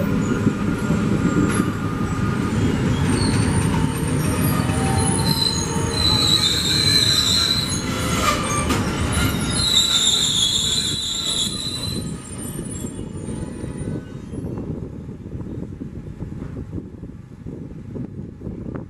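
Passenger train heard from on board: a steady running rumble of the coaches on the track, with high, wavering squeals from the wheels, loudest twice in the middle. The squealing stops about twelve seconds in, and the rumble fades to a quieter level toward the end.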